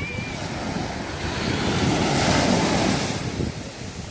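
Small waves breaking and washing up the sand of a beach, with wind rumbling on the microphone. The wash swells loudest about halfway through, then eases.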